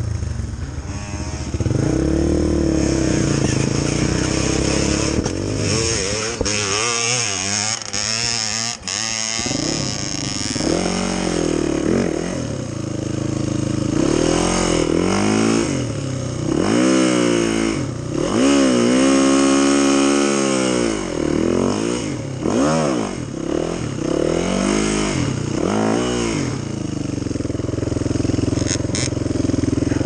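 Dirt bike engine running and revved up and down in short bursts again and again, steadier for the first few seconds and near the end.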